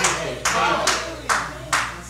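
Even, rhythmic hand clapping, about two to three claps a second, growing fainter, with faint voices behind.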